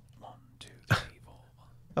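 Faint muttered speech under the breath, with one short sharp click about a second in.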